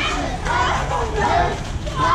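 Several children's voices calling and chattering at once, high-pitched and overlapping.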